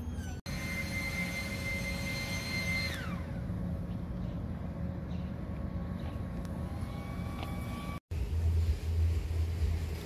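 Street background noise with a high, steady engine-like whine that slides sharply down in pitch about three seconds in, as of a vehicle or aircraft passing. A brief dropout near the end is followed by a steady low rumble.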